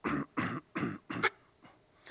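A man coughing four times in quick succession, short harsh bursts about half a second apart.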